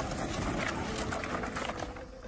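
A tall pile of wooden pallets and boards collapsing under an excavator, the wood clattering and knocking in a dense, continuous stream of knocks.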